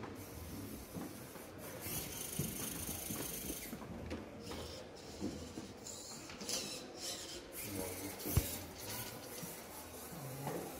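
Small robot's electric drive motors whining in short high-pitched bursts as it drives and turns across the arena floor. A single low thump about eight seconds in.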